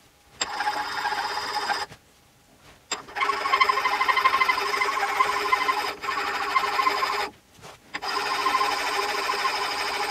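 Hand file worked over a metal part held in a vise: three spells of quick scraping strokes, about a second and a half, four seconds and two seconds long, with short pauses between, and a steady ringing note from the metal under the file.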